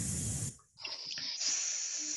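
A person hissing a drawn-out 's' sound, the unvoiced hiss of air through the teeth, like air escaping from a tyre: a short hiss, a brief break, then a longer steady one from just under a second in.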